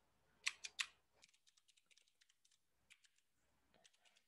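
Computer keyboard typing, faint: three sharper keystrokes about half a second in, then a run of lighter, quicker keystrokes.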